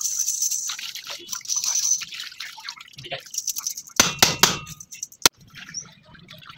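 Hands washing a greasy wheel bearing in a metal pan of dark, oily liquid: splashing and dripping, with loud metal clicks and knocks about four seconds in and a single sharp click near the end.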